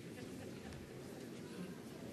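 Low, indistinct murmur of many voices in a large church as the congregation and clergy exchange the sign of peace.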